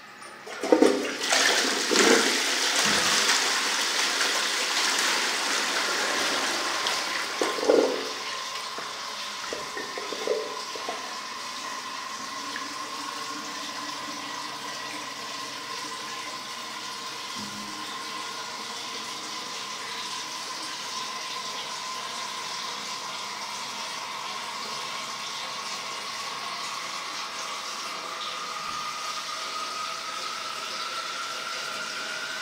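Armitage Shanks Melrose wall-mounted toilet flushing: a loud rush of water starts suddenly just under a second in and runs for about seven seconds, with a few knocks. It then settles into a quieter steady rush of the cistern refilling, with a thin steady whistle that rises slightly in pitch near the end.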